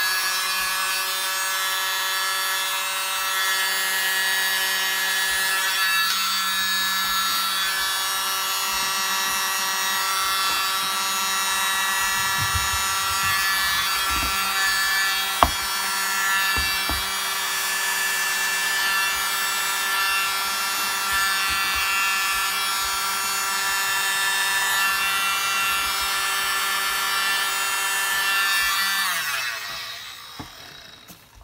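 Small handheld electric mini blower running steadily, a motor whine with rushing air, blowing wet acrylic paint outward across a disc; it switches off just before the end. A single sharp click about halfway through, with a few low knocks around it.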